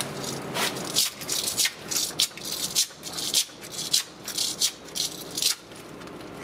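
Hand scraper scraping a softened paint coating off a rendered exterior wall in a quick run of short strokes, about two a second. The coating has been loosened by a water-based paint stripper, so it comes away with each stroke.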